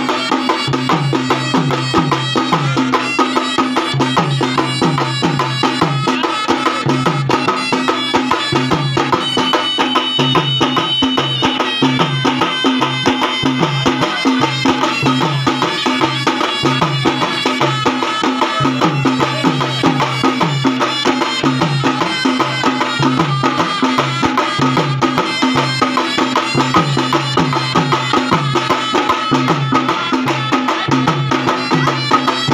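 Khalu baja band playing a Hindi film tune: a sanai carries the melody over fast, steady beating of barrel drums.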